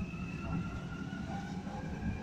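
Low steady rumble with a faint steady high-pitched whine over it, typical of an electric metro train running on the elevated line near the platform.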